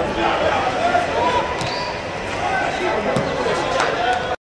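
Men's voices calling and shouting across an open football pitch, with a few sharp thuds of the ball being kicked.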